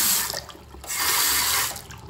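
Two-handle chrome faucet running a full stream into a porcelain sink basin in two spells: the first stops about a quarter second in, the second starts about a second in and is shut off near the end, leaving a faint trickle.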